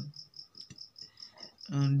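Insect chirping steadily: a high-pitched note pulsing about six times a second.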